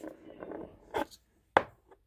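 Tarot cards being handled on a table: soft rustling with three short, sharp taps, the second about a second in and the third near the end.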